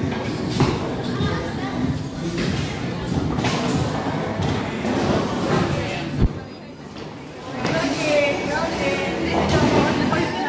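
General noise of a busy bowling alley: people talking over knocks and clatter from the lanes, with one sharp thud about six seconds in and voices louder near the end.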